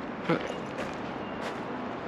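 Steady outdoor background hiss of street ambience, with no distinct event standing out; a single spoken word comes just after the start.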